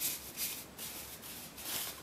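Rubbing and rustling of a knitted hat being handled on a foam display head, in several short scuffs.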